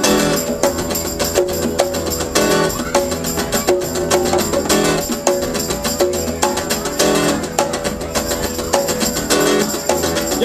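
Live band playing an instrumental passage: strummed acoustic guitar over a steady rhythm on congas and drum kit.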